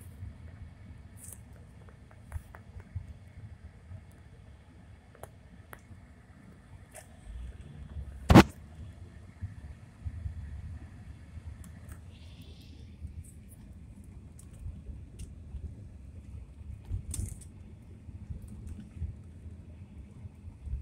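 Car interior road noise: a low steady rumble from the moving car, with scattered light clicks and one sharp, loud knock about eight seconds in.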